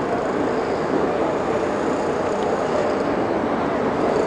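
Steady, even rushing background noise of an outdoor race course, with no distinct events.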